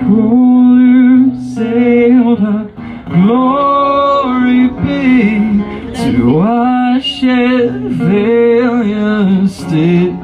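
Live solo performance: a man singing long, held notes with slides between them, accompanied by his own acoustic guitar.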